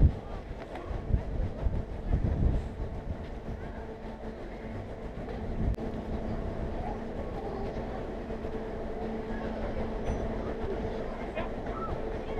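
Steady low drone and hum of the approaching Great Lakes freighter Paul R. Tregurtha's engines, becoming more even about halfway through. In the first few seconds, wind gusts thump on the microphone.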